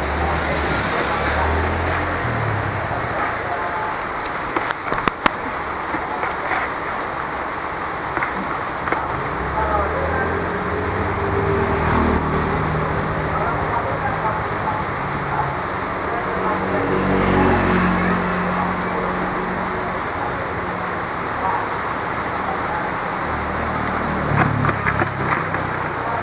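Busy roadside market ambience: a steady hubbub of background voices with motor vehicles passing, and a few sharp clicks about five seconds in.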